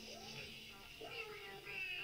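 Playback of an old iPod voice memo: a high voice sliding up and down in pitch, three or four arching glides in a row.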